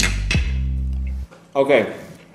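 Music: sharp plucked notes over a held low bass note, cutting off suddenly just over a second in.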